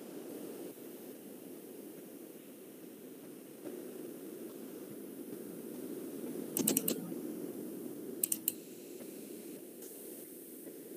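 Computer keyboard typing heard over a steady low hum: a quick run of about four key clicks about two-thirds of the way in, then three more clicks a second and a half later.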